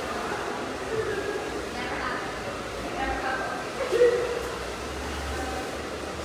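Faint voices talking in the background, with a slightly louder burst of voice about four seconds in.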